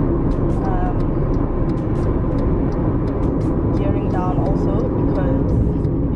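Steady road and engine rumble inside a moving car's cabin, with short snatches of a voice now and then and scattered light clicks.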